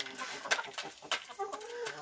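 Chickens pecking dried maize kernels from a plastic bowl and the ground, giving a few sharp clicks of beaks on grain, with soft, low clucking in the second half.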